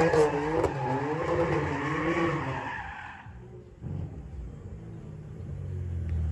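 BMW M4's twin-turbo straight-six revving up and down while its rear tyres spin and screech through a drift, the screech and revs dying away a little after three seconds in. The engine then settles to a lower, quieter rumble as the car pulls away.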